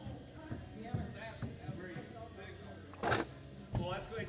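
Indistinct voices in a large room, with a single brief, loud rushing noise about three seconds in.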